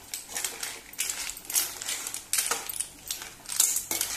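Clams in their shells clinking against each other, a spoon and the pan as they are stirred, in irregular bursts of clattering and scraping a few times a second.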